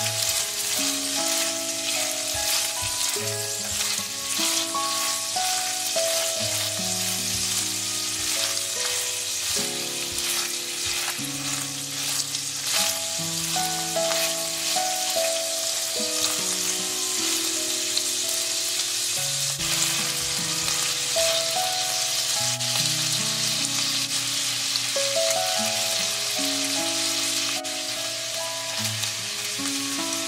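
Minced pork sizzling in hot oil in a frying pan, with the spatula stirring and scraping through it now and then. Soft background music plays underneath, steady notes changing every second or so.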